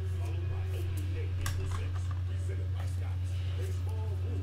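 A steady low hum with faint voices under it, and a few small clicks and taps, the sharpest about a second and a half in.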